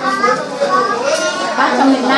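Indistinct talk from several people in a room, with a high-pitched voice in the first second.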